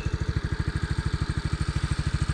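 Motor scooter engine idling, a steady, even putter of about a dozen beats a second.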